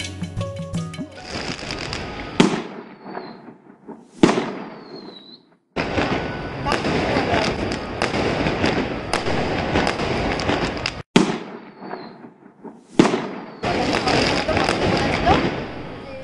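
Fireworks going off: four sharp bangs, each followed by a falling whistle, and two long stretches of dense crackling.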